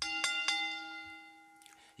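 A single bell-like chime struck once, ringing with several overtones and fading away over about a second and a half.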